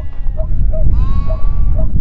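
Goats bleating: a short bleat at the very start, then a longer, high-pitched bleat about a second in that rises and then holds steady. Beneath it run a steady low rumble and a faint short chirp repeating a couple of times a second.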